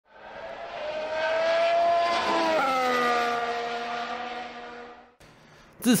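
High-revving racing car engine, climbing slightly in pitch, then dropping suddenly about two and a half seconds in as it shifts up a gear, then holding steady while it fades away and dies out about five seconds in.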